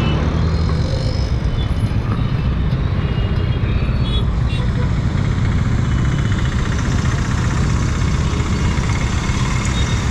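Royal Enfield Classic 350's single-cylinder engine running at steady road speed under a heavy, even rush of wind noise.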